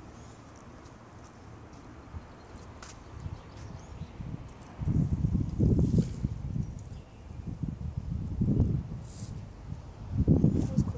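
Low, muffled rumbling and bumping on the microphone from about five seconds in: handling noise from the camera rubbing against clothing, loudest in two bouts. Before that there is only a faint, steady background.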